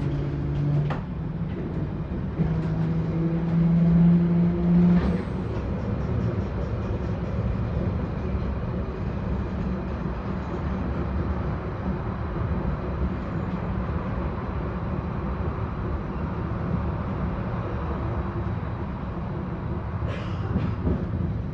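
London Underground 1972 Stock Bakerloo line train heard from inside the carriage. Its motor hum steps up in pitch over the first five seconds as the train picks up speed, with a single knock about five seconds in, then settles into a steady rumble of wheels on the track.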